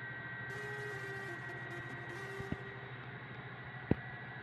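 Steady hum of industrial machinery with a constant high whine, and a couple of light clicks.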